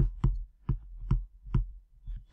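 Stylus tapping on a tablet while handwriting: four short, sharp clicks a little under half a second apart.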